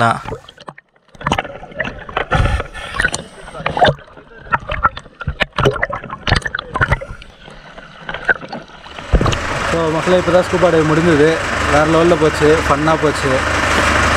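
Water splashing and sloshing around an underwater action camera at the sea surface, with irregular sharp knocks and clicks. After about nine seconds a man's voice talks over a steady low hum.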